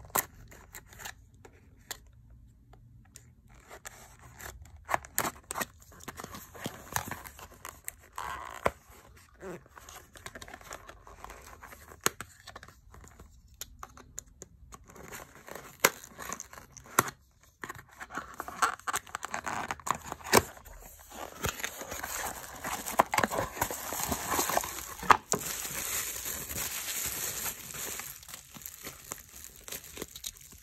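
Cardboard and paper packaging being cut open with a utility knife and handled, with scattered clicks and scrapes. About two-thirds of the way through it turns into a denser stretch of plastic bubble wrap crinkling.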